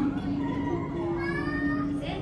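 Beluga whale vocalising: squeaky calls that glide up and down in pitch, with a rising sweep in the second half.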